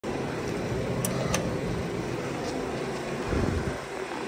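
An elevator's hall call button (ADAMS type) pressed, giving two light clicks about a second in, press and release, with the button lighting up. Under it runs a steady background hum, with a brief low rumble near the end.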